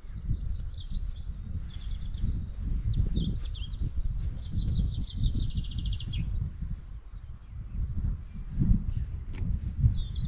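A songbird singing several quick, high trilled phrases, stopping about six seconds in, over a steady low rumble.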